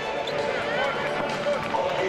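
Basketball arena crowd chatter, with a few short squeaks of sneakers on the court floor between about half a second and a second in.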